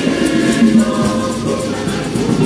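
A church choir of many voices singing a hymn together, sustained and steady.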